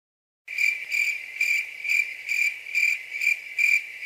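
Cricket chirping as a stock sound effect: a high, thin chirp repeating evenly about twice a second, starting about half a second in.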